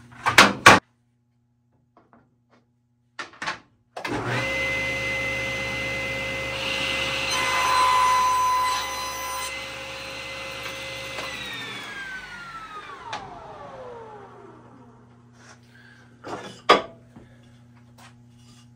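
SawStop Professional Cabinet Saw starting up about four seconds in and running with a steady whine, louder while it cuts a board for a test cut after its blade and fence were aligned. It is switched off about eleven seconds in and its blade coasts down with a falling whine. A few clicks come before it starts and one knock near the end.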